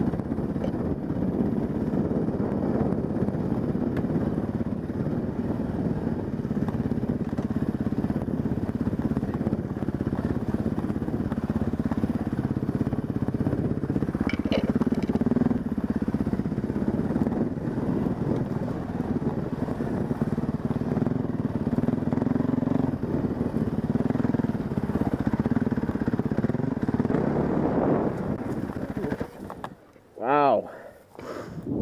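Husqvarna dirt bike engine running under way on a trail, heard from the rider's helmet, with wind and rattle mixed in. A brief high squeal comes about halfway, and the engine sound drops away near the end.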